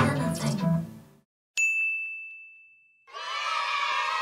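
An acoustic guitar's last strummed chord rings out and fades away over the first second. At about a second and a half in comes a single bright ding that fades out. Near the end a dense, busy sound effect begins.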